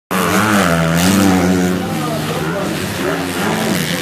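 Motocross bike engines revving hard, their pitch rising and falling with throttle and gear changes as racers approach over the jumps.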